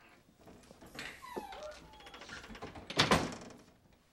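A wooden door being handled, with a short falling creak of the hinges a little after a second in. About three seconds in it shuts with a loud thud.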